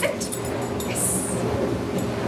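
A dog whimpering briefly near the start, over a steady hum in the room. A few light clicks follow, and a short high hiss comes about a second in.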